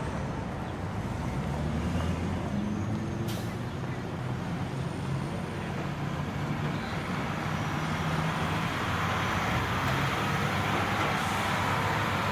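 Truck engine running steadily as the truck drives along.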